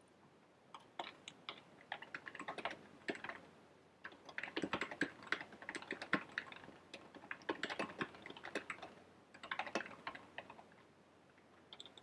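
Typing on a computer keyboard: quick runs of key clicks entering a line of text, starting about a second in, with short pauses between the runs.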